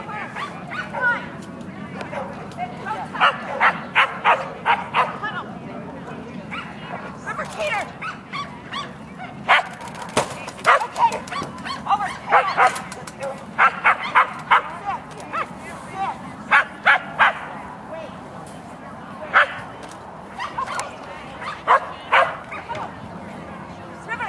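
A dog barking in quick runs of several sharp barks, again and again, over a steady murmur of background voices.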